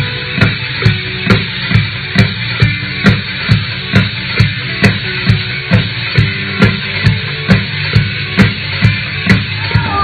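Drum kit played to a steady beat of a little over two strong hits a second.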